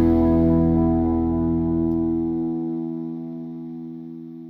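Background rock music: a held, distorted electric guitar chord ringing out and slowly fading, its bass dropping away about two and a half seconds in.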